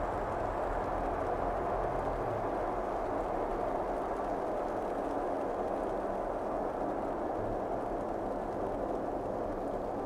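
Steady rushing background noise of a nature soundscape, even and unchanging in level, with no distinct events in it.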